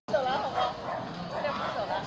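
A dog whining and yelping in rising and falling calls, in two runs.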